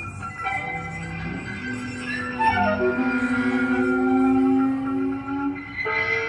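Jazz tentet playing an instrumental passage: clarinets, flutes and brass hold long layered notes over bass and drums. About two and a half seconds in a line falls in pitch and the ensemble grows louder.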